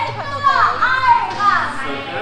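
A woman's voice speaking through a public-address system to an audience, with faint background music.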